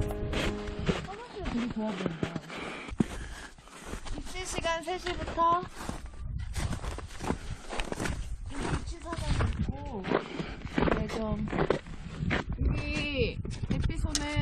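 Voices over background music.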